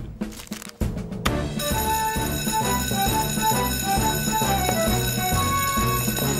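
Fire-station electric alarm bell ringing steadily from about a second in, as a cartoon sound effect, over background music with a stepping melody and bass.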